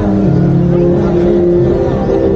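Loud music with held low notes that step from pitch to pitch, over the chatter of a large crowd.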